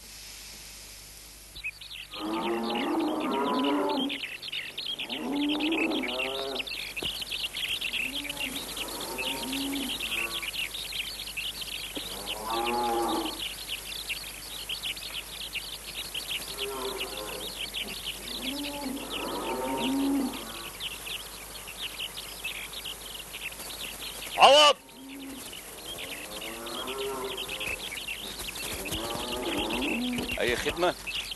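Rural farmyard ambience: many small birds chirping steadily over repeated drawn-out calls of a farm animal, one roughly every two to three seconds. A brief sharp loud sound comes near the end.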